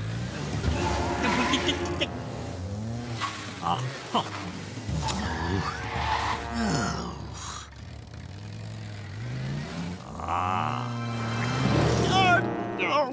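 Cartoon small-car engine running and revving, its pitch rising and falling again several times as the car drives, with the odd brief tyre squeal.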